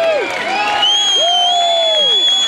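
Concert crowd cheering and whooping as a song ends, with a long, loud, piercing whistle starting about a second in.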